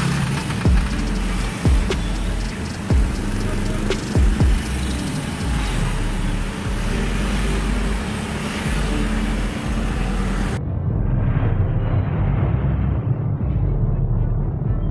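Road-traffic and vehicle noise with a low rumble and several short heavy thumps in the first few seconds, mixed with music. About ten seconds in, the hiss cuts off abruptly, leaving a low rumble and hum.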